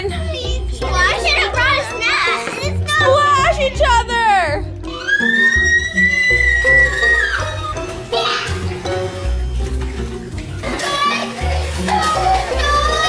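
Background music: a pop song with a sung melody over a steady beat, with one long held note about halfway through.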